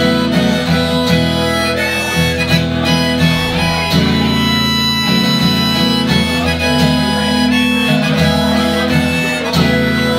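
Harmonica playing long held notes over a strummed acoustic guitar, a wordless instrumental passage between sung verses.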